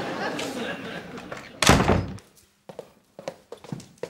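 A door slamming shut: one loud thud about halfway in, followed by a few light taps.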